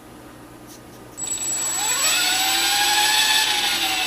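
ESky Belt CPX RC helicopter's electric motor and main rotor spinning up about a second in: a whine that rises in pitch, then holds steady with a rushing hiss from the blades. The stock ESky speed controller only starts the motor once the throttle stick reaches about quarter stick, which is normal for it.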